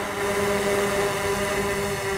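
3DR Solo quadcopter hovering a few metres up, its four propellers making a steady hum.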